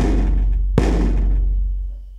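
Two stick strokes on a large hair-on hide drum, one right at the start and another just under a second later, each ringing out deep and then fading away.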